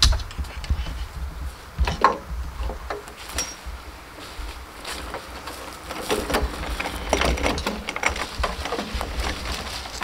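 A metal wheelbarrow loaded with compost, a pitchfork lying in its tray, being lifted and pushed over straw mulch: irregular knocks, rattles and crunching, busiest about six seconds in.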